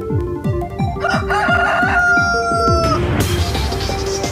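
A rooster crowing once, one call of about two seconds, laid over electronic music with a steady kick-drum beat. A noisy swish comes in just after the crow ends.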